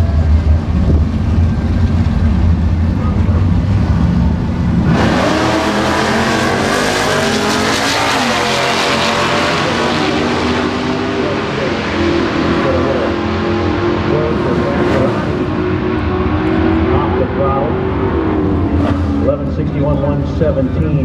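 Two Mopar drag cars rumbling at the starting line, then launching about five seconds in at full throttle. Their engine notes climb through the run and fade as the cars pull away down the drag strip.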